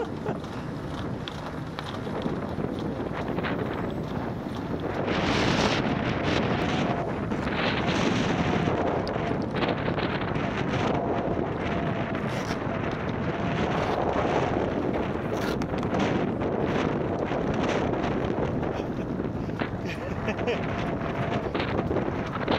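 Wind buffeting the microphone of an open-topped velomobile at about 14 mph over steady tyre and road rumble, with a faint wavering whine that comes and goes.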